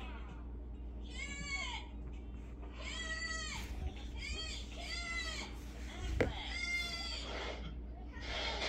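About five high-pitched, whiny calls, each rising and then falling in pitch, with one sharp tap a little after six seconds in.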